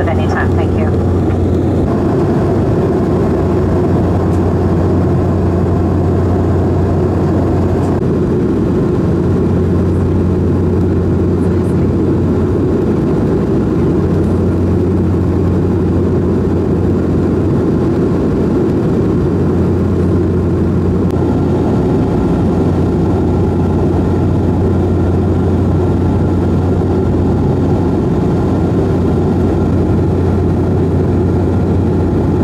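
Steady in-cabin drone of a turboprop airliner in flight: a constant low propeller hum with its overtones over a broad rush of airflow.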